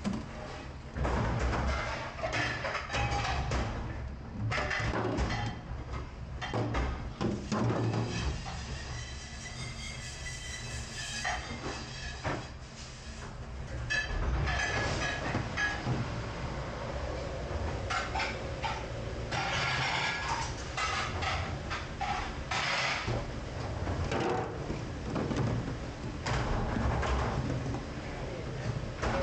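Stainless steel hotel pans clattering and scraping against each other and the steel sink as they are scrubbed and set into soapy water, in a string of irregular knocks and clanks.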